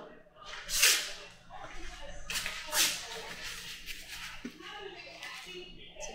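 Rustling and bumping of a camera being handled and repositioned, with a few short hissing rustles, the strongest about a second in and another around the middle.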